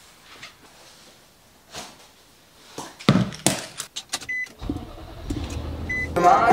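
Getting into an Infiniti car: after faint rustling, a run of sharp clicks and knocks from the door and keys, a short electronic beep, and then a steady low engine rumble from about three-quarters of the way through, with a second beep near the end.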